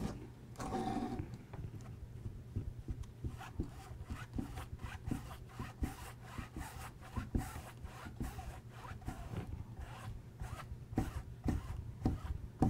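Foam brush scrubbing and dabbing over a stretched canvas: a quick, irregular run of short rubbing strokes, several a second. A steady low hum lies under it.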